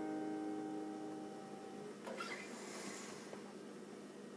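The final chord of a Takamine G Series acoustic guitar rings out and fades away over the first two seconds. About two seconds in comes a brief rustling noise, then faint room hiss.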